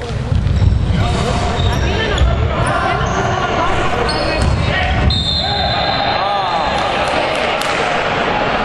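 Live basketball play on a hardwood court: the ball bouncing, sneakers squeaking on the floor, and players and spectators calling out, all echoing in a large hall.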